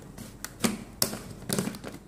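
Red plastic screw lid being twisted on a glass jar, giving a handful of sharp plastic clicks and knocks, about five in two seconds.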